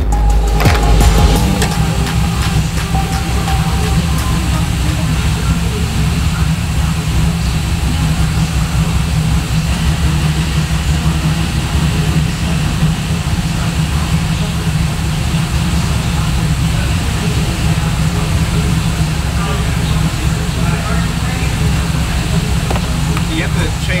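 A steady, loud, low mechanical rumble, like a motor or engine running in the workshop, with faint voices near the end.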